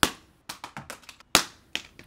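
Small handheld LED worklights dropped from 20 feet, clacking onto concrete. There is a sharp hit at the start, then a few quick smaller clicks about half a second in, another sharp hit past the middle and a lighter click near the end.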